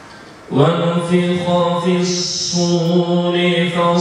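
A man reciting the Quran in a slow melodic chant, beginning about half a second in and holding long drawn-out notes.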